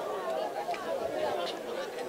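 Crowd of protesters chattering, many voices mixed together at a moderate level with no single voice standing out.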